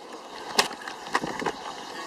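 Handheld camera being jostled near the pavement: a few sharp knocks over a steady hiss.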